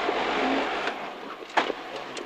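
Peugeot 205 GTi 1.9's four-cylinder engine and road noise heard from inside the rally car's cabin, easing off over the first second. A sharp knock about one and a half seconds in.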